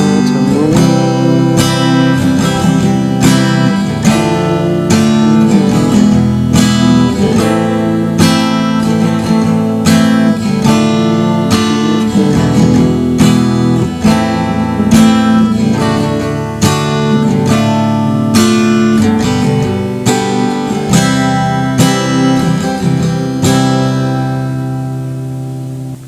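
Acoustic guitar strummed in a steady rhythm, working through a chord progression of D minor, G, C, E, A minor and D. Near the end the strumming stops and the last chord rings out and fades.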